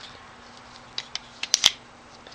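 About five small, sharp metallic clicks from a Colt Frontier Scout .22 single-action revolver as its cylinder pin is pushed back into the frame during reassembly, the last two the loudest, about a second and a half in.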